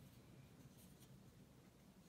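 Near silence: low room hum, with a few faint, brief rustles as the hand and brush move off the paper, one right at the start and two close together just under a second in.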